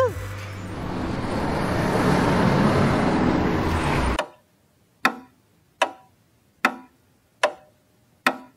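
A steady rushing noise with a low hum swells over the first two seconds and cuts off suddenly about four seconds in. Then a countdown sound effect: four sharp ticks, one about every 0.8 s.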